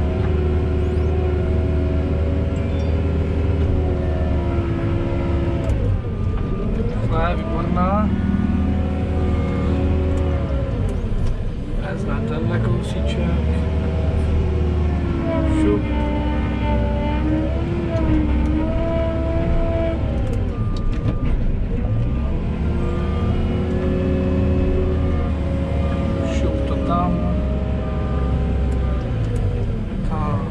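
JCB telehandler's diesel engine, heard from inside the cab, rising and falling in revs again and again as the machine pushes and spreads silage on the clamp.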